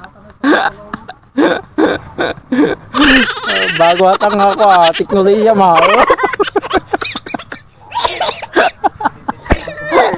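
A man's voice talking in short phrases, with a drawn-out, wavering vocal sound for about three seconds in the middle.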